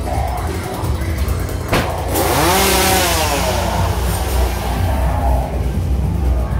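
A chainsaw revving once, its pitch rising and then falling over about two seconds, with a sharp knock just before it, over dark background music with a heavy bass.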